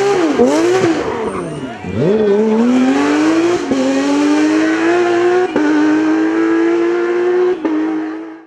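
Porsche 911 race car's flat-six engine at full race revs, rising and falling sharply on and off the throttle for the first two seconds. It then pulls hard in one long climb in pitch, broken by three quick upshifts.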